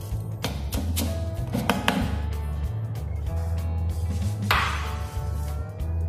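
Background music with a steady bass line. Under it, a chef's knife chops parsley on a wooden log chopping block, with a few sharp chops in the first two seconds.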